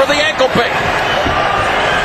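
A commentator's voice trailing off at the start, over the steady noise of an arena crowd.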